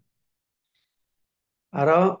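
Near silence, then a man's voice speaks one short word near the end.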